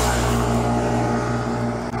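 An engine running steadily at constant speed, a low even hum.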